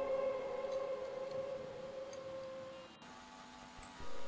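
An eerie held synthesizer drone from the background music, one steady tone that fades away over about three seconds, followed by a fainter low tone near the end.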